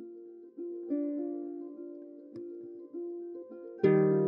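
Harp music: slow, single plucked notes that ring and fade one after another, with a louder, lower chord struck near the end.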